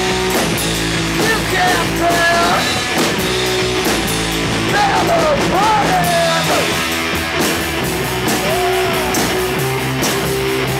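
Live rock band playing loudly: electric guitars, bass and drum kit, with a high line that slides up and down in pitch several times over the top.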